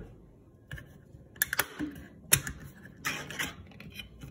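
Ring-pull lid of a tin of chopped tomatoes being opened: a few sharp metallic clicks as the tab is lifted and the seal pops, then a short scraping tear as the lid peels back near the end.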